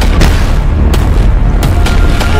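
Loud action-trailer score: a continuous deep bass rumble with several sharp percussive hits cutting across it, about five in two seconds.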